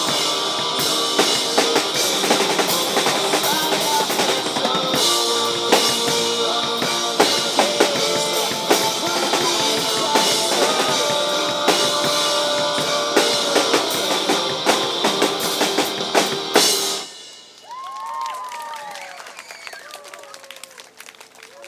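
Acoustic drum kit with cymbals played hard over a pop-rock backing track, busy fills and crashes, ending suddenly about 17 seconds in. After that the music is gone and only much quieter street sound remains.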